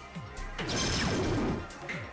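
A dart scores on a Phoenix soft-tip dart machine, which plays its hit sound effect: a loud crashing noise starting about half a second in and lasting about a second. Background music with a steady beat runs underneath.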